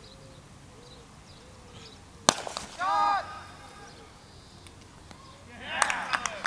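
A cricket bat strikes the ball once with a single sharp crack a little over two seconds in. A short shout from a player follows at once.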